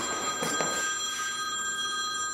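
Mobile phone ringing: a steady electronic ring tone of several held pitches that starts suddenly and sounds throughout. Two footsteps on a hard hallway floor come about half a second in.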